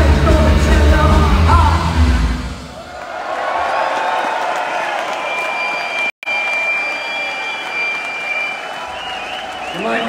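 A live punk rock band plays loud through the hall's PA and stops about two and a half seconds in, followed by audience applause and cheering. A steady high-pitched tone sounds through the middle of the applause, and the recording drops out for a moment just after six seconds.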